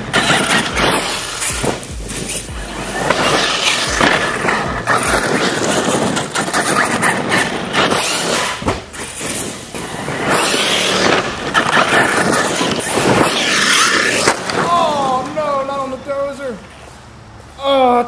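Arrma Kraton 6S RC monster truck's brushless electric motor whining as it speeds up and slows, its tyres scrabbling and spraying gravel, with repeated knocks as it lands and bounces over a small dirt jump. It goes quieter shortly before the end.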